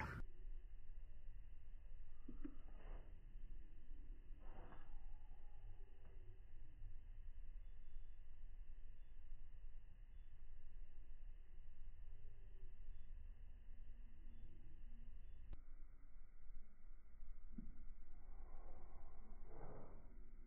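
Low room tone: a steady faint hiss with a few faint, drawn-out, indistinct sounds, the audio track of slowed-down slow-motion footage. The hiss changes character abruptly about three-quarters of the way through.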